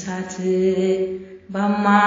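An Ethiopian Orthodox hymn (mezmur) to St. Gabriel, sung as a chant-like melody. The voice pauses briefly about a second and a half in, then comes back in.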